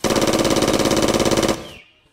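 Automatic-gunfire sound effect: a loud burst of rapid, evenly spaced shots, about eighteen a second, lasting about a second and a half, then stopping.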